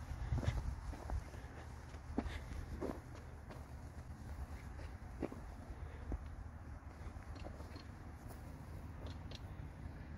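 Footsteps on loose dirt and gravel, short irregular crunches about a second apart over a steady low rumble.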